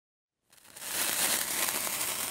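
Hissing sound effect of an animated logo intro: silence, then a noisy hiss, strongest in the highs, fades in about half a second in and holds steady.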